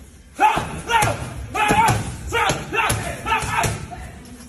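Gloved punches thudding into a wall-mounted uppercut pad, each with a short, sharp vocal shout, about two a second, starting about half a second in.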